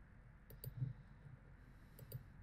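Faint computer mouse clicks: a quick pair about half a second in, a soft knock just after, and another quick pair at the very end.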